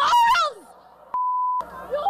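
Women screaming and shouting in high, strained voices, followed a little past a second in by a steady censor bleep masking a word, then more shouting over a crowd.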